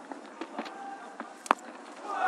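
Faint stadium crowd noise, then a single sharp crack of a cricket bat striking the ball about one and a half seconds in.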